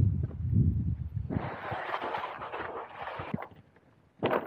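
Handling noise of a kayak being moved: a low rumble, then about two seconds of gritty rolling and scraping as it is wheeled over the ground on its cart, fading out near the end.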